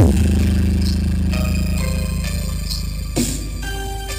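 Loud electronic dance music played through a stacked mobile-disco speaker system: a hit opens a deep bass note that holds for about three seconds under higher synth notes.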